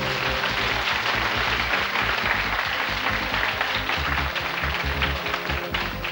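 Studio audience applauding over the game show's short music cue for a correct answer.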